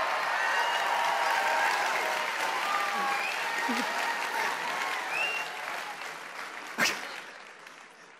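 Large audience applauding and cheering. It is loud at first, then fades away over the last few seconds, with one sharp click a little before the end.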